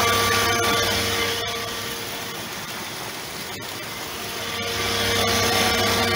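Pool filter pump's electric motor running with a steady hum, just switched on from the timer's manual setting. A few faint clicks sound over it, and it cuts off suddenly at the very end.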